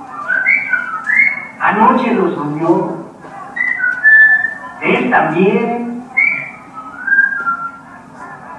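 Film soundtrack: short whistled phrases answering short bursts of a voice in turn, the voice about two and five seconds in and the whistling between.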